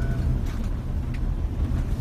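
Steady low rumble of a Mercedes Sprinter van's engine and tyres, heard from inside the cab while driving slowly over a wet, rough dirt track.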